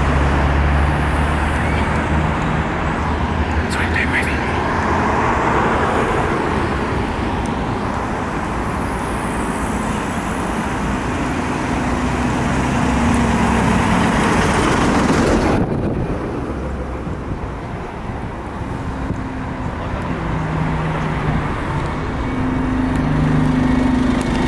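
Street traffic with the diesel engine of a preserved London Transport AEC Regent III RT double-decker bus drawing closer. After a sudden cut, the bus's engine runs steadily while it stands at a stop.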